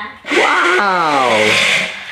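Electric motor and gears of a remote-control McLaren P1 toy car whirring, with a hiss of its wheels on a hardwood floor. The pitch falls steadily as the car slows, and the sound stops just before the end.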